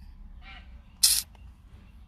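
Low steady hum inside a car, with one short, sharp hiss about a second in.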